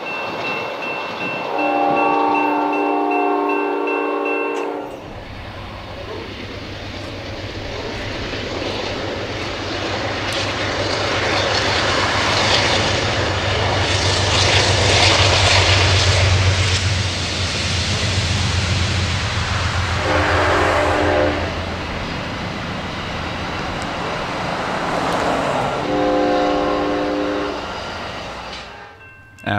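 Amtrak Coast Starlight passenger train: the diesel locomotive's horn gives a long blast in the first few seconds, then the train passes close by with a steady low engine hum and wheel-and-rail noise that builds to its loudest about halfway through. The horn sounds again, a short blast and then a longer one near the end.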